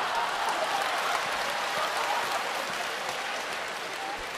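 Theatre audience applauding, the clapping dying away slowly.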